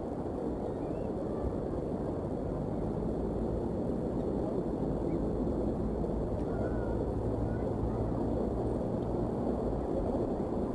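Steady low outdoor rumble, even in level throughout, with a few faint, brief high chirps scattered through it.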